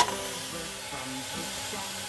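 Boneless lamb joint sizzling steadily as it sears on the bottom of a hot, dry stainless steel saucepan.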